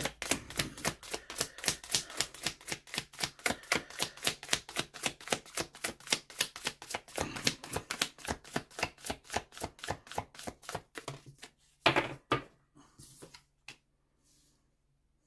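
A deck of tarot cards being hand-shuffled, the cards slapping together in a quick, even rhythm of about four or five a second. The shuffling stops about eleven seconds in, followed by a few louder taps as a card is drawn and laid on the wooden table.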